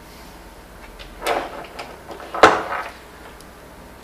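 Two brief handling sounds as the multimeter's test leads are picked up off the workbench: a soft rustle about a second in, then a sharper knock.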